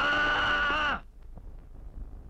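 A man's loud, drawn-out yell, held on one pitch for about a second and falling as it breaks off.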